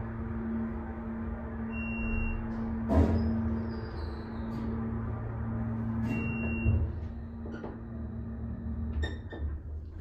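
ThyssenKrupp hydraulic elevator running upward, its pump motor giving a steady hum over a low rumble. Two short high beeps sound about four seconds apart, the second as the car passes a floor, and there is a single sharp knock about three seconds in.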